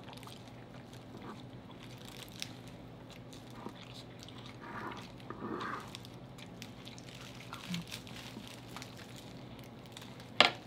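Close-miked eating sounds: people chewing and biting kernels off a cob of Mexican street corn, with many small wet mouth clicks and a brief louder muffled sound about five seconds in.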